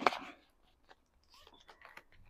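Faint crinkling and a few light clicks of a clear plastic binder envelope and the paper money in it being handled.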